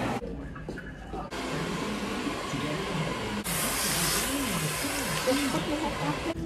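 Rushing hiss of running water from a salon shampoo-bowl sprayer as hair is rinsed. It becomes louder and brighter about three and a half seconds in and eases shortly before the end.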